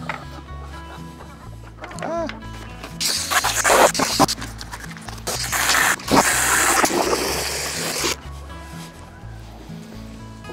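Background music with a steady beat, broken twice, for about a second and then about two seconds, by a loud rushing hiss of water running into a plastic bucket.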